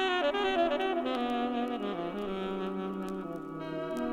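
Jazz saxophone playing a phrase that steps downward in pitch, over held chords.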